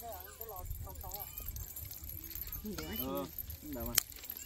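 Voices of several people chatting and exclaiming, with a steady low rumble underneath.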